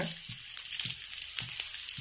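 Mustard oil with carom seeds and crushed garlic sizzling in a kadhai over a gas flame: a steady hiss with a few faint crackles.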